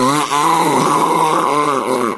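A woman blowing her nose hard into a tissue, done as one long, loud, voiced blow whose pitch wavers up and down for about two seconds, a comic exaggerated nose-blow.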